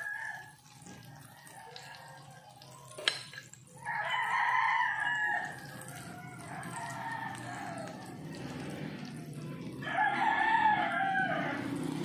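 A rooster crowing twice, one long call about four seconds in and another near the end, over the faint sizzle of chicken deep-frying in oil. There is a sharp click shortly before the first crow.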